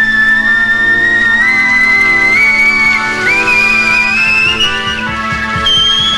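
A man whistling a high, piercing melody into a microphone, climbing step by step in pitch, over held organ chords and the rock band's accompaniment.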